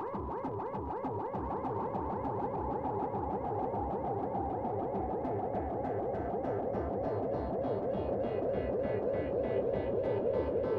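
Live electronic music from a hardware synthesizer setup (Behringer Neutron, Korg Volca Bass and Korg Monologue, sequenced at 80 BPM): a fast pulsing sequence of repeating pitch sweeps. It grows slightly louder and brighter over the second half.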